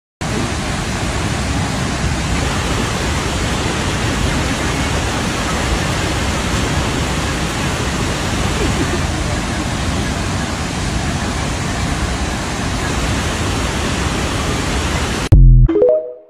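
Steady roar of a large waterfall close by, an even rushing noise with no breaks. It cuts off near the end, and a brief loud electronic tone from the TikTok end screen follows.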